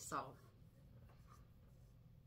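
A woman says a brief "So", then near silence: room tone.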